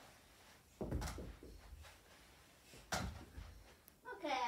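Two dull thuds about two seconds apart: tennis balls being thrown and landing.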